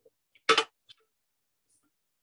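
A spatula scrapes once, briefly, inside a Thermomix's stainless steel mixing bowl as melted chocolate is scraped out, with a faint tick just after.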